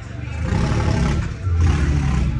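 A tractor's diesel engine revving as the tractor drives forward. It grows louder over the first half second and swells again about halfway through.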